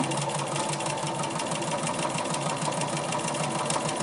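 Bernina 440 domestic sewing machine running fast under hard pedal pressure for free-motion quilting, needle stitching in a rapid, even rhythm over a steady motor tone. The fabric is moved too slowly for that speed, so the stitches come out really tiny.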